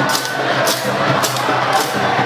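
Drums playing a quick rhythm, about two to three sharp strikes a second, over the noise of a large crowd.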